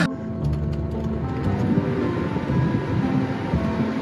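Background music over a steady rush of air from a car's air-conditioning blower turned up to maximum.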